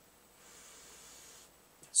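A person sniffing the beer's aroma from a glass held at the nose: one soft, steady in-breath through the nose lasting about a second.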